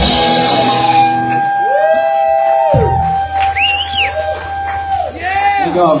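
A live rock band's closing hit: a crash cymbal and chord struck right at the start, ringing out over about a second. Then a long steady electric guitar tone rings on from the amplifiers with swooping pitches over it, while the audience cheers and whoops.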